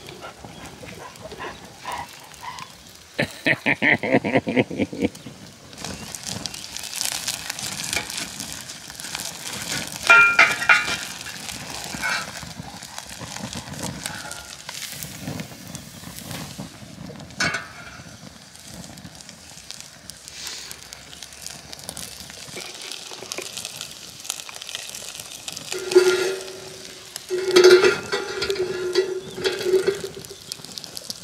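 Wood fire crackling in a small grill stove with a fish sizzling over it, while an impatient dog whines now and then. There is a quick rhythmic run of dog noises about three seconds in and longer whines near the end.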